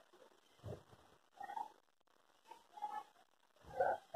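A marker writing on a whiteboard, making several faint, short squeaks.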